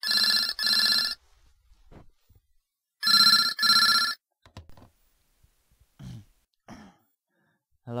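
Telephone ringing in two double rings about three seconds apart, the ring-ring cadence of a British phone. It stops after the second double ring as it is picked up.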